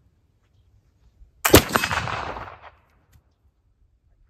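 A .45-caliber Kibler Southern Mountain flintlock rifle fires a single shot about a second and a half in, loaded with 50 grains of homemade hay-charcoal black powder. A faint click comes just before the report, and the shot echoes and dies away over about a second. The charge goes off promptly, firing fine.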